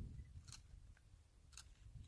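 Near silence with a faint low rumble and two short camera-shutter clicks, about a second apart.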